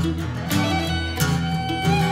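Acoustic string band playing an instrumental fill between vocal lines: upright bass notes and strummed acoustic guitar under a held fiddle line, in a bluegrass-country style.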